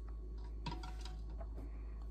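Raw eggs lowered by hand into a saucepan of cold water, giving a few faint clicks as they knock against the pan and each other.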